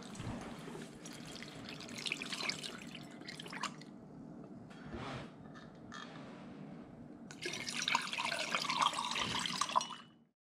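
Liquid poured through a metal funnel into a glass mason jar, trickling and splashing. It comes in two spells: one through the first few seconds, then, after a quieter stretch, a louder pour from a little past seven seconds in.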